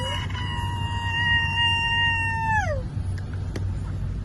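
A person's long, high-pitched squeal held on one note for about three seconds, sliding down and stopping near the end, over the low rumble of the moving car.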